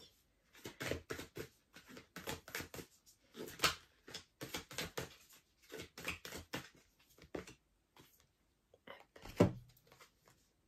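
Oracle cards being shuffled by hand: a run of quick, irregular slaps and flicks of card against card, with one louder knock near the end.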